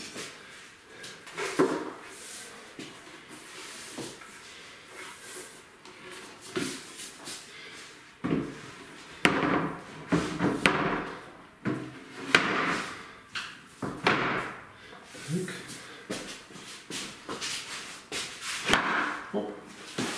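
Wooden tabletop sections of an IKEA extendable kitchen table being handled: sliding scrapes and a string of irregular knocks and thuds of wood on wood as the extension leaf is unfolded and the table halves are pushed together.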